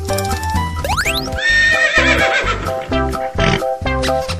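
Bouncy background music with a horse whinny laid over it, about a second and a half in: a wavering, shaking call lasting about a second and a half, led in by a quick rising whistle-like glide.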